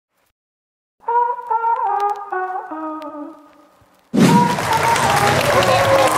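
A horn-like instrument plays a short run of notes stepping downward, about six notes, fading away over some three seconds. About four seconds in, a loud mix of crowd noise, voices and music cuts in abruptly.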